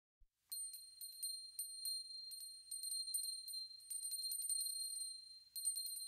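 Music opening with small high-pitched bells, one ringing pitch struck rapidly and irregularly over and over, starting about half a second in.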